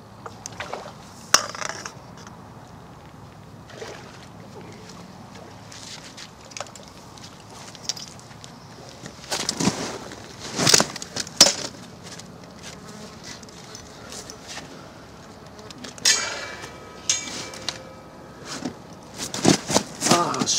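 Handling noise from landing a fish by hand: scattered knocks and rustles of a landing net and fishing gear, with a louder cluster of knocks and splashy noise about ten seconds in as the net comes out of the water. A short buzz follows about sixteen seconds in.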